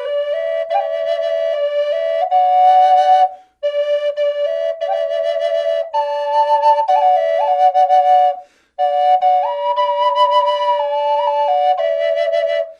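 Brazilian rosewood double Native American flute in mid B played as a drone flute: the lower flute, its bottom hole uncovered, holds one steady drone note while the upper flute plays a slow stepping melody above it. The playing comes in three phrases with a short breath pause between each.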